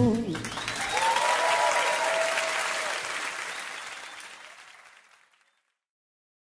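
A live audience applauding and cheering as the last sung note of a song ends, the applause dying away to silence about five seconds in.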